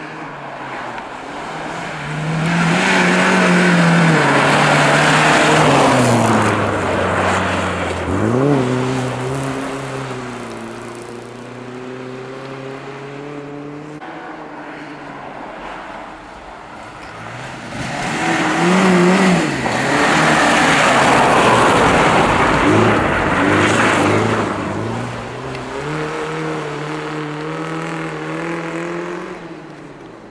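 Rally car engines revving hard in two loud passes, about twenty seconds apart. Each time the pitch rises and falls through lifts and gear changes, then the engine runs on more quietly as it pulls away.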